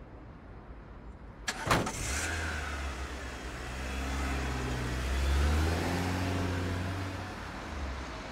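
A car door shuts with a sharp double knock about one and a half seconds in. The taxi's engine then runs as the car pulls away, a low steady sound that grows louder and then eases off.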